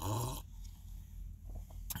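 A sip slurped from a cup of coffee, lasting about half a second, followed by faint breathing and a small click near the end.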